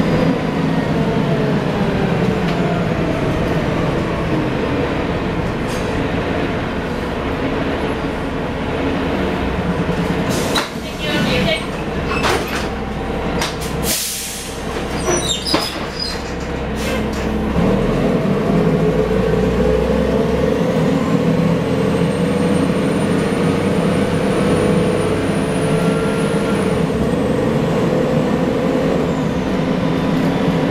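Cabin sound of a 1990 Gillig Phantom transit bus with a Cummins L-10 diesel and Voith D863.3 automatic transmission: the engine slows as the bus comes to a stop, with clicks and knocks and a sharp hiss of air about halfway through. The engine then pulls hard as the bus moves off, with a high whine rising over it near the end.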